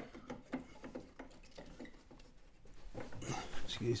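Light clicks and small knocks of plastic model parts being handled, as small magnetic flaps are positioned on a large scale-model Snowspeeder. A breathy noise follows near the end.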